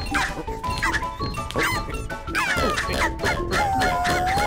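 Cartoon background music with short wordless squeaks and yelps from animated characters, several gliding up and down in pitch.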